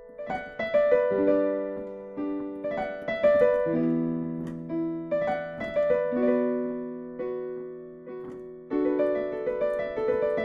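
Digital piano playing held left-hand chords under a right-hand melody of single notes, the chord changing about every two and a half seconds.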